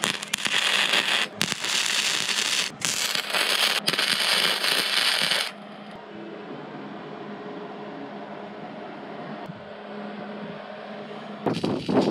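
Electric welding arc crackling in runs with short breaks for about five seconds, then a quieter steady hum; the crackling starts again near the end.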